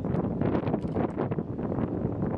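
Wind buffeting the microphone in irregular gusts on the bow of a moving lake passenger boat, over the boat's engine and water running underneath.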